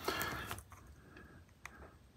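A facial tissue rustling briefly as it is squeezed and pulled over a hearing aid's rubber dome to draw wax out of the dome's grid, followed by a couple of faint ticks.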